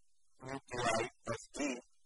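A man's voice speaking a few short words in four quick bursts, starting about half a second in.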